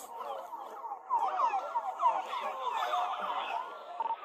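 Police car sirens yelping, several overlapping in rapid rising and falling sweeps, growing louder about a second in and easing off near the end.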